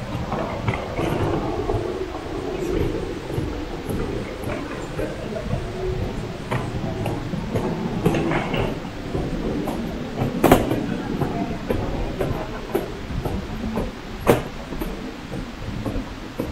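Airport terminal ambience: murmur of passengers' voices and footsteps with the rolling rumble of suitcase wheels on the hard stone floor. Two sharp knocks stand out, about ten seconds in and again about four seconds later.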